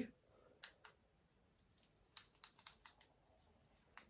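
Near silence with a few faint clicks: a pair about half a second in, then a quick run of them between about two and three seconds in.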